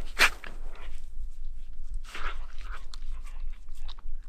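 A dog rooting about in deep snow with its head: three short crunching, breathy bursts, the first the loudest, with no barking.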